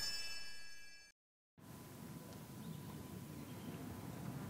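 Broadcast transition sound effect for a hole graphic: a shimmering, chime-like ringing that fades and cuts off about a second in. After a brief gap of silence comes faint, steady outdoor ambience from the golf course.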